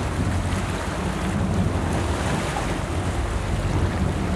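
Steady wind buffeting the microphone over the wash of churned sea water off the stern of a fishing boat under way, with a low steady rumble underneath.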